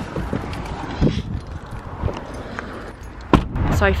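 Handling noise from the camera being moved around, with irregular small knocks and clicks, a jingle of car keys held in the hand, and one sharp click a little over three seconds in.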